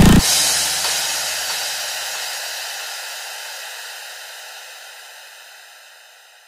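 The final beat of an electronic dubstep track cuts off just after the start, leaving a noisy wash, like a reverb or cymbal tail, that fades out steadily over about six seconds.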